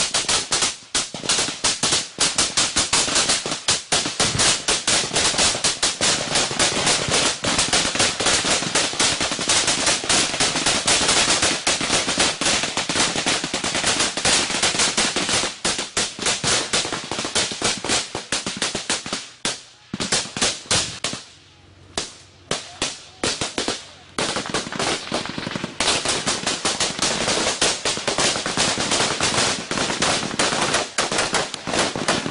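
Small-arms gunfire in a firefight: rapid automatic fire with shots packed into dense, overlapping bursts. About twenty seconds in it thins to a few scattered shots for several seconds, then heavy firing resumes.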